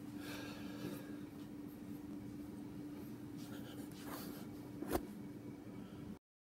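Rustling and handling noise around a phone lying face up, with one sharp knock about five seconds in, over a steady hum.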